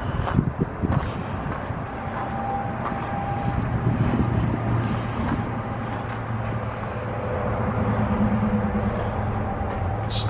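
A steady low engine-like hum runs throughout, with a few sharp knocks and scuffs in the first second.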